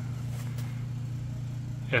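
A steady low hum that holds one even pitch throughout, with nothing else happening.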